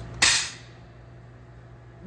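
A single stick hit on a cymbal stack, a 12-inch Meinl Generation X China with a jingle under a Meinl Classic Custom splash: a sharp, trashy crack with a rattle and clap to it that dies away within about half a second.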